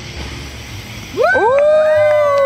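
A man blowing out birthday candles with a long breathy blow. About a second in, several people whoop together in long rising calls, with a few claps.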